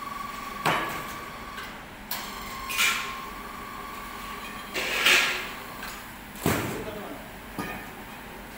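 About half a dozen heavy metal clanks and knocks, a couple leaving a short ringing tone, as a freshly cast concrete-mixer drum is knocked loose and hoisted on chains out of its sand mold.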